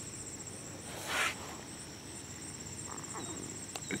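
Steady, high-pitched chirring of insects in the background, with a short burst of noise about a second in.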